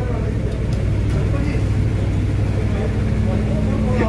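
A steady low machine hum runs throughout, with a second steady tone joining it about three quarters of the way in, over faint background voices.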